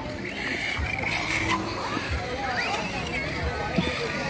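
Indistinct voices of people around, over a steady outdoor background murmur.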